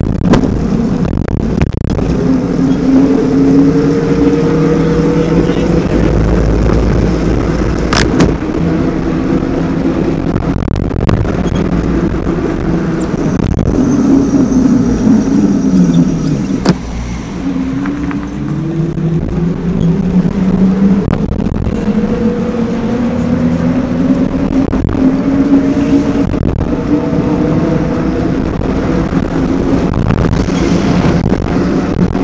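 Bafang BBSHD mid-drive e-bike motor whining under power, its pitch rising and falling with speed, over wind and road noise. A little past halfway the whine slides down, drops out briefly, then climbs again. A sharp click about eight seconds in.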